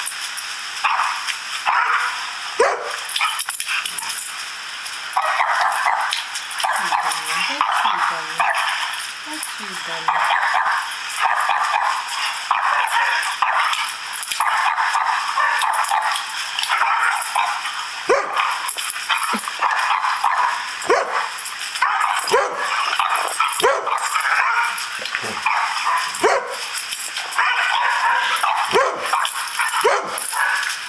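A Doberman barking repeatedly in reply to recorded dog barking played back on a laptop, the live and recorded barks overlapping.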